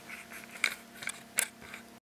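A few short, sharp clicks over faint rustling, the two loudest a little over half a second in and near a second and a half in.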